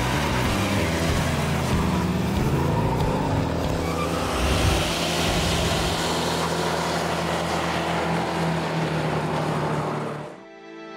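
Muscle car engine noise: revving with the pitch dropping and climbing in the first few seconds, then running steadily at speed.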